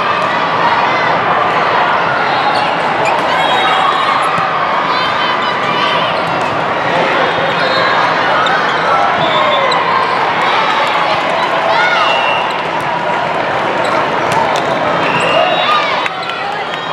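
Volleyball play in a large, echoing sports hall: a steady din of many overlapping voices, with sneaker squeaks and the slaps of volleyballs being hit and bouncing on the court.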